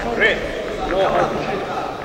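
Indistinct men's voices calling out in a large, echoing sports hall.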